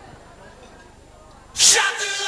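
Low murmur of a seated dinner audience, then about a second and a half in a sudden loud shout that opens into loud chanted voices as the paso doble begins.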